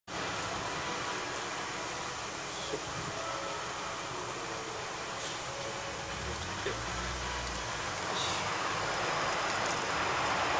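Steady outdoor street background noise, a hiss of distant traffic, with a low rumble passing about six to eight seconds in and a couple of faint knocks.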